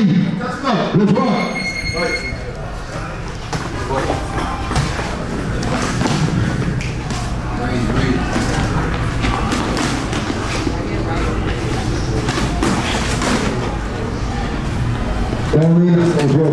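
Spectators' voices and shouts echoing in a boxing gym, with repeated thumps of gloved punches as two boxers exchange blows. A short high tone sounds about a second and a half in.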